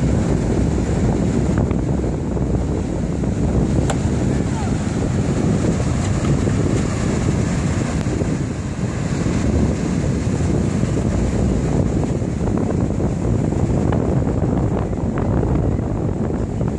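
Wind buffeting the phone's microphone in a steady, low rumble, with ocean surf breaking behind it.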